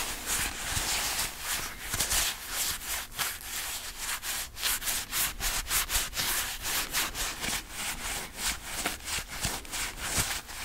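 Black leather-gloved fingers scratching and rubbing on a microphone's mesh grille close up, a dry rasping hiss in quick repeated strokes, several a second.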